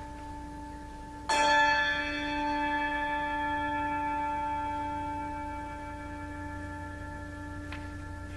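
A bell struck once about a second in, ringing with several clear tones that slowly fade over the following seconds, over the lingering tone of an earlier stroke.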